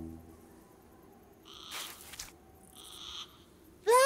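Cuckoo of a broken cartoon cuckoo clock sounding feebly twice, about a second and a half in and again near three seconds, as the music fades out at the start. Just before the end comes a loud cartoon cry that rises and then falls in pitch.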